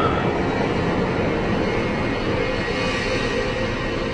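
Steady, dense low rumbling drone from a dark trailer soundtrack, with a held tone coming in about halfway through.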